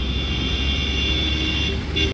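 Road traffic noise: a vehicle's steady low rumble, with a faint high whine that fades near the end.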